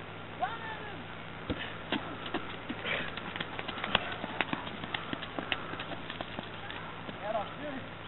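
Players' shouted calls during a field game, with a quick irregular run of short sharp knocks through the middle.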